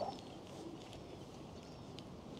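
Faint outdoor ambience of a large, quiet crowd, with a few faint, high, short bird chirps scattered through it.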